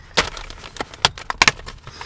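Clear plastic bag of soft-plastic fishing baits being pulled open and handled: crinkling and rustling, with a few sharp crackles, the loudest about a second and a half in.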